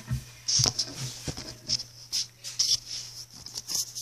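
Hairbrush strokes through long hair: a scratchy swish repeated about twice a second.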